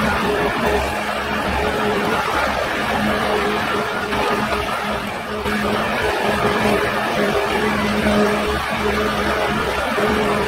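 Ecolog 574E forwarder's diesel engine and hydraulics running with a steady droning hum while the crane folds in over a load of brush.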